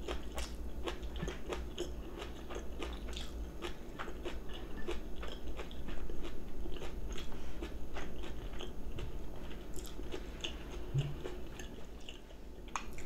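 Close-up chewing of a mouthful of rice and side dishes, with many small, irregular crisp crunches throughout.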